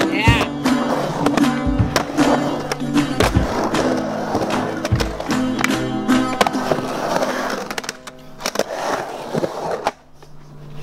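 Skateboard on a concrete ramp: wheels rolling and trucks and board clacking against the coping in a run of sharp knocks. Music with a steady beat and singing plays over it.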